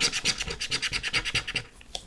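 Edge of a plastic bank card scraping the scratch-off coating of a lottery scratch card in quick strokes, about ten a second. The scraping stops about a second and a half in.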